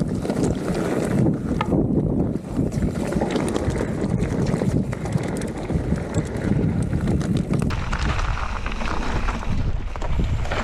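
Wind buffeting the camera microphone on a fast mountain bike descent, with the tyres crunching over loose rock and gravel and the bike rattling and knocking over the bumps in many short clicks.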